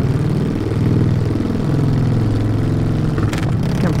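Harley-Davidson V-twin motorcycle engine running under way, its pitch dipping and rising several times as the throttle is rolled off and on. A short click sounds a little after three seconds in.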